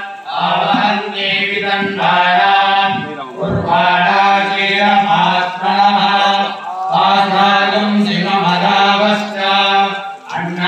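Temple priests chanting mantras in unison during an abhishekam, in long, steady-pitched phrases broken by brief pauses for breath.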